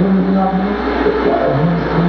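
Live experimental electronic noise music. A steady low drone lies under pitched tones that warble and glide up and down. One tone is held for about the first half-second.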